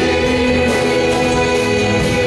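Live worship music: several voices singing together in long held notes, backed by a small band of violin, acoustic guitar and bass guitar.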